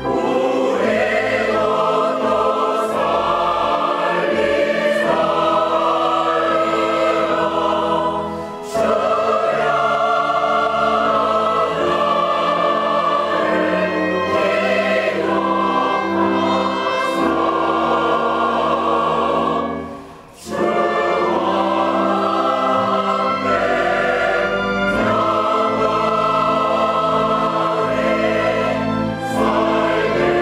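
Large mixed choir of men's and women's voices singing a hymn in Korean with orchestral accompaniment. The choir pauses briefly between phrases twice, the longer break about twenty seconds in.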